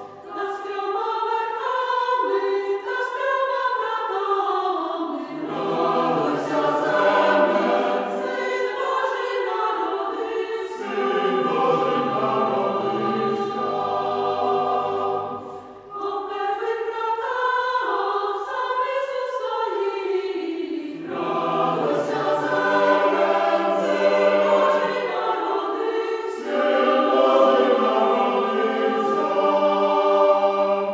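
Church choir singing a Ukrainian Christmas carol in several voice parts. The singing breaks off briefly about halfway through, and then the same phrase pattern begins again.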